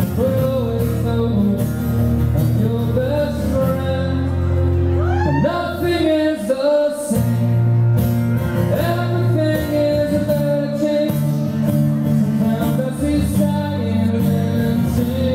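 Live solo performance: a man singing with his own strummed acoustic guitar, heard through the room's sound system. The guitar briefly drops out about six seconds in, then comes back under the voice.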